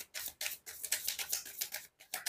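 A deck of tarot cards being shuffled by hand: a quick, irregular run of light card-on-card flicks and slides.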